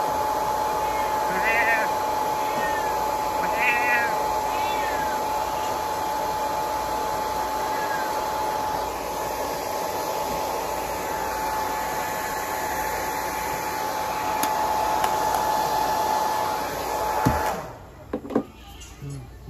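Handheld hair dryer running with a steady whine while a cat meows several times, mostly in the first few seconds; the dryer is switched off near the end.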